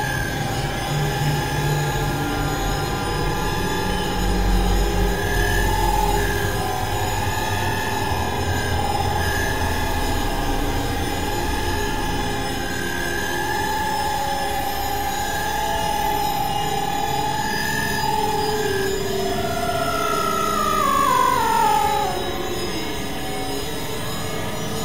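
Dense, layered experimental electronic music: a wavering high drone tone over a noisy, grinding texture, which slides down in pitch in steps near the end.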